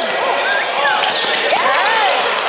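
Basketball game sounds: sneakers squeaking in short glides on the hardwood floor, the ball bouncing and players calling out.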